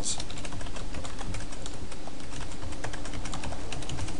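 Typing on a computer keyboard: a quick, uneven run of keystrokes as a short phrase is typed out.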